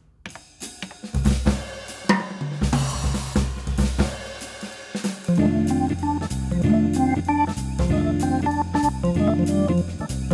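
Yamaha Genos arranger workstation playing a drawbar organ voice through its rotary speaker effect with added drive, over a drum accompaniment. It opens with drums and cymbals, and about five seconds in bass and sustained organ chords come in over a steady beat.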